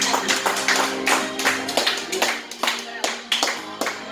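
Karaoke backing track of an enka ballad playing an instrumental interlude between sung lines. Sustained chords run under a quick, regular beat of sharp taps, about four a second.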